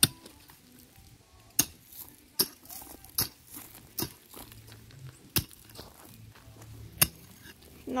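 A steel hoe blade chopping into dry, stony ground. It strikes about seven times, each a sharp clink, at an uneven pace of roughly one swing every second or so.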